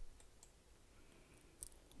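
Near silence: room tone, with a few faint short clicks, the clearest shortly before the end.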